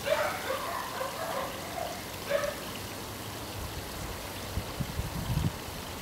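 Steady trickle of water, with a few short faint high-pitched sounds in the first half and low thumps near the end.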